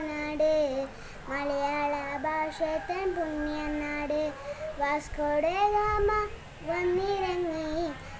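A young girl singing a Malayalam song unaccompanied, in long held notes. There are short breaks between phrases about a second in and again about six seconds in.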